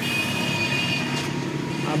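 E-rickshaw front wheel spun by hand, driving a newly fitted speedometer cable. The spinning wheel hub gives a steady high squeal over a low rumble, and the squeal dies away after about a second and a half as the wheel slows.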